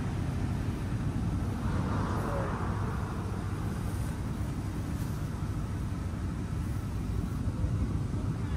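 Steady low rumble of road traffic, with a car passing about two seconds in.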